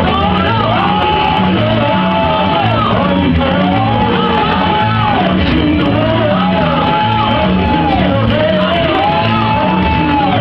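Live church worship music: a voice singing long held phrases over instrumental accompaniment with a steady repeating beat, loud in a large hall.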